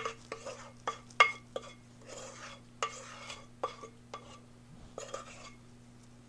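A spatula knocking and scraping against the inside of a ceramic mixing bowl, a string of sharp taps with short scrapes between them, as the last of a milk mixture is scraped out of the bowl.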